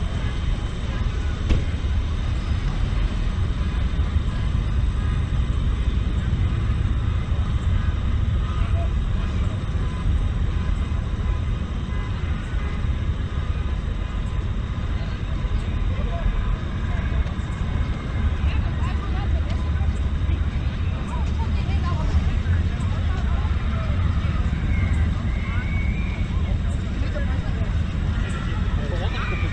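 Steady low rumble of outdoor ambience, with faint voices in the distance in the second half.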